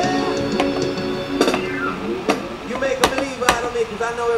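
The last strummed chord of an electric cigar box ukulele ringing out and dying away over the first second or so. A few sharp knocks follow, and near the end a wavering voice-like tone.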